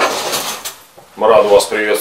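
A man speaking in Russian, with a short break in his voice about a second in.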